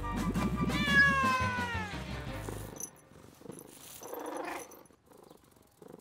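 A cartoon cat's long falling meow, over background music that fades out about three seconds in.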